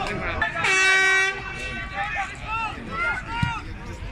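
A single steady horn blast, held at one pitch for just under a second, near the start, over the voices of shouting spectators.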